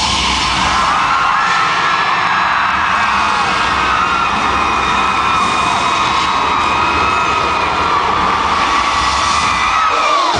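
Arena crowd screaming and cheering over loud live pop music from the stage PA.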